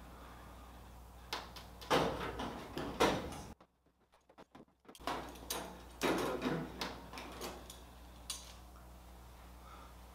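Stainless steel sheet-metal firewall being handled and fastened to the aluminium fuselage sides with clecos: scattered sharp metal clicks and short scraping rattles.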